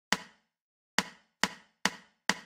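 Wood-block-like metronome count-in clicks for the lead-in bar before the drums come in: four short sharp clicks, the first two nearly a second apart, the next ones at about two a second.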